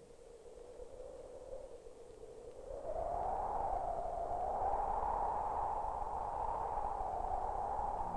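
Eerie electronic soundtrack tone: a faint steady hum, then from about three seconds in a louder, slowly wavering tone over a low rumble.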